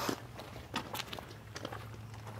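Faint footsteps on dirt: a few soft, scattered crunches over a low steady hum.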